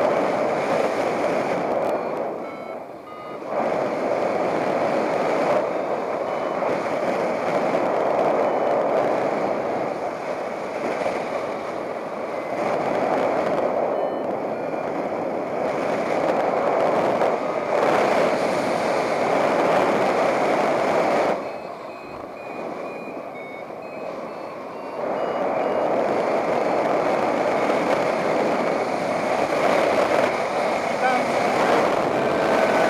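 Wind rushing over the microphone of a paraglider in flight, swelling and easing, with short high beeps from a variometer showing through where the wind dips, about three seconds in and again from about twenty-two seconds. The beeping is the sign of the glider climbing in lift.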